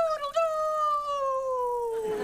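A boy imitating a rooster's crow: a couple of short clipped notes, then one long high note about half a second in, held and sliding slowly down in pitch.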